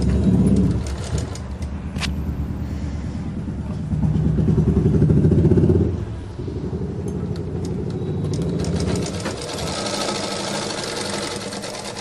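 Electric sewing machine motor running in stretches of stitching, with the fast patter of the needle; it speeds up and eases off, loudest about four to six seconds in. A higher hiss joins near the end.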